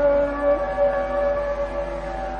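Hindustani classical vocal in raga Hamir: the singer holds one long steady note after gliding up into it, over quieter sustained accompaniment.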